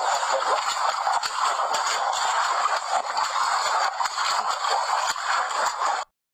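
Water splashing and sloshing continuously as a giant panda thrashes its paws in a shallow pool, with many sharper splashes throughout. A short laugh comes at the very end.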